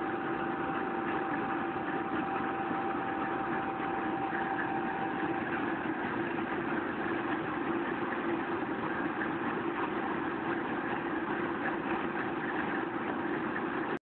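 Class 50 diesel-electric locomotive's English Electric V16 engine idling steadily, with a thin steady whine that fades out about five seconds in.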